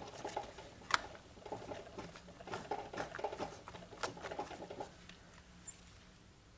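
Small ink pad dabbed and rubbed onto a clear stamp on an acrylic block: quick, light, uneven tapping, with one sharper click about a second in. The tapping stops about four and a half seconds in.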